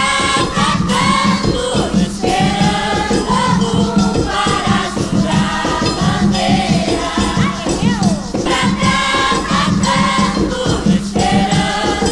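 Umbanda ponto for Oxum from a 1988 LP: a choir singing in unison over a steady beat of hand drums (atabaques) and a rattle.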